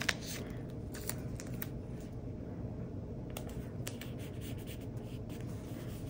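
Quiet handling of paper stickers: a sticker peeled from its sheet and pressed onto a planner page, with a sharp click at the start and a few faint ticks and rustles after it. A low steady hum runs underneath.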